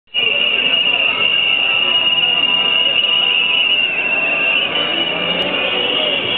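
A crowd of protesters blowing whistles: a shrill, continuous whistling that wavers slightly, with crowd chatter underneath.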